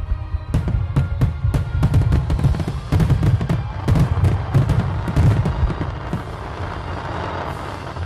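Music with heavy drum beats mixed with aerial fireworks: repeated sharp bangs of shells bursting, and a dense crackle that fills in near the end.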